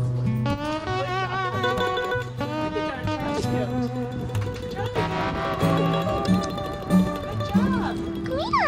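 Background music: a melody with slightly wavering notes over steady low notes that change every second or so.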